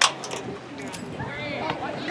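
Spectators' voices murmuring in the background, with one faint call about a second and a half in, after a sharp click right at the start.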